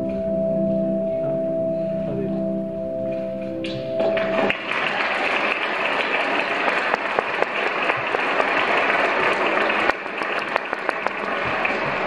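Orchestral ballet music holds a final chord of several steady notes for about four seconds, then a large audience starts applauding. The clapping thins a little near the end.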